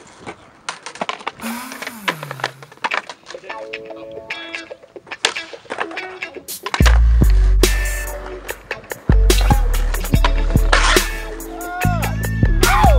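Scattered skateboard clacks and knocks on concrete, then music with a heavy bass beat comes in suddenly about seven seconds in and covers the rest, louder than the board sounds.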